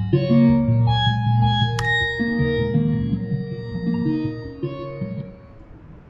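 Computer-generated music sonifying a Myrtle Rust fungus DNA sequence, with all its layers playing together: pitched notes for the nucleotides, dinucleotides and reading frames, stepping from one to the next over slower sustained pad tones for the GC content. A single click sounds about two seconds in, and the music fades out near the end.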